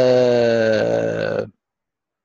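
A man's long drawn-out hesitation sound, a held 'uhhh' of about a second and a half with its pitch sinking slightly, which cuts off suddenly.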